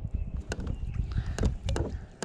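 Handling noise aboard a plastic kayak while a worm is threaded onto a fishing hook: about four sharp clicks and knocks over a low rumble.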